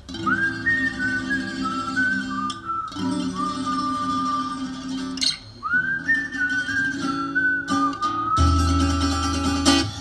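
A woman whistling a melody into a microphone over guitar and plucked double bass in a swing tune. Each of the two whistled phrases slides up into its first note and then holds long notes, and the bass comes in heavier near the end.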